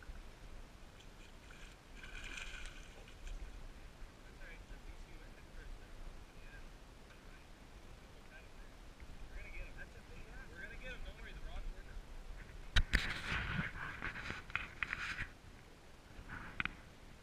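Wind rumbling on the microphone with faint voices in the background. About thirteen seconds in, a sharp knock followed by about two seconds of choppy splashing as the salmon is netted beside the boat.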